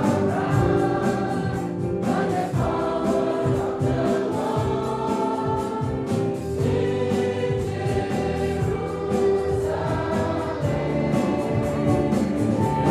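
Many voices singing a gospel hymn together with instrumental accompaniment and a steady beat.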